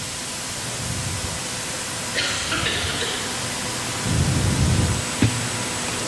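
A steady, loud hiss of background noise, with a low rumble for about a second around four seconds in and a single short click just after it.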